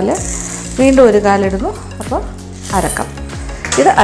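Dry sago (tapioca) pearls poured from a glass jar into a stainless-steel bowl, a brief rattling hiss near the start.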